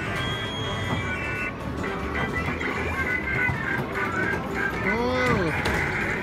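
Arcade din: electronic music and jingles from the game machines, with voices in the background. About five seconds in, a pitched sound rises and falls.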